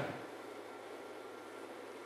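Faint, steady hiss of room tone with a faint steady hum, and no distinct sound event.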